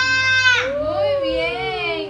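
A young child's high-pitched, drawn-out vocalizing: one note held for about half a second, then a long slide downward in pitch.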